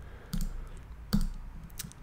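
Two clicks of a computer mouse, a little under a second apart, with a fainter tick near the end.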